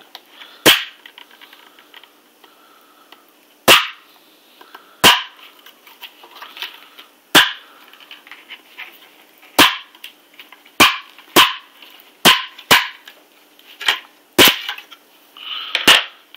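Plastic snap-fit clips on the cover panel of a Seagate GoFlex Desk drive enclosure popping free one after another as the panel is pried up from below: about a dozen sharp snaps at irregular intervals, the last just before the end.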